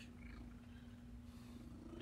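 A house cat purring faintly and steadily while being stroked.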